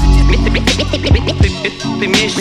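Hip-hop beat with turntable scratching by the DJ: short scratches swoop up and down in pitch over the beat, with a heavy bass note at the start.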